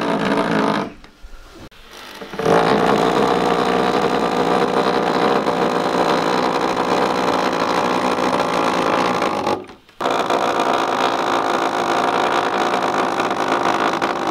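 Corded electric drill with a screwdriver bit driving long wood screws through a timber cross brace into a leg. It runs steadily in stretches: a short burst, a pause, then about seven seconds of running, a brief stop, and another run of about four seconds.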